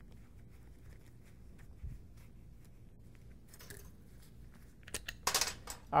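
Small metal tools and parts being handled on a workbench: a light thump about two seconds in, then sharp clicks and clinks near the end, over a low room hum.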